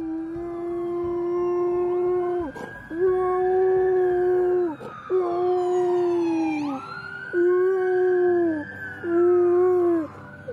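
A large white dog howling: five long, held notes with short breaks between them, each dropping in pitch as it ends.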